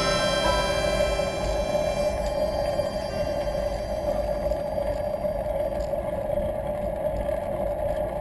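Wind and tyre rumble picked up by a bike-mounted camera on a bicycle rolling downhill: a steady rushing noise with a constant hum running through it. Background music fades out in the first second or so.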